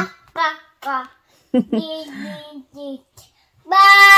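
A toddler's voice: short sing-song sounds, then a loud, high-pitched call held for about a second near the end.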